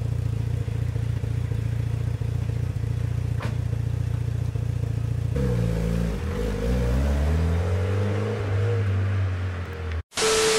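Mitsubishi Lancer Evolution's turbocharged four-cylinder engine idling steadily through its exhaust. About five seconds in, the engine revs and the car pulls away, the engine note rising and falling in pitch.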